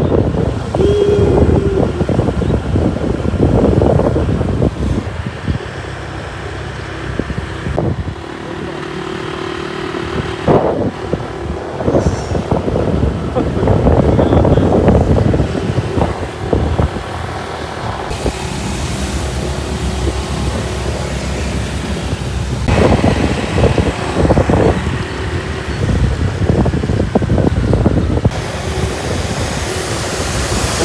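Road traffic: vehicles passing with a steady low rumble and gusty surges, changing abruptly a few times.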